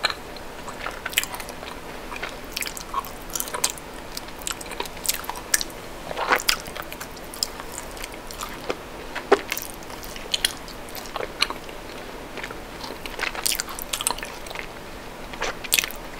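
Close-miked biting and chewing of a milk chocolate bar, with irregular sharp snaps and crackles as pieces are broken and bitten off. A few snaps stand out, about six seconds in, about nine seconds in and near the end.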